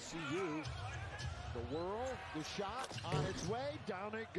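Broadcast audio of an NBA game: a TV announcer talking over a basketball being dribbled on a hardwood court, with a few sharp bounces between the phrases.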